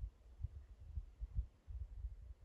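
Wind buffeting the microphone: low, uneven rumbling gusts that come and go every fraction of a second.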